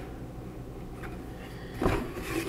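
A cardboard box being handled: a faint tick about a second in and a short rough scrape of cardboard near the end, over a low steady hum.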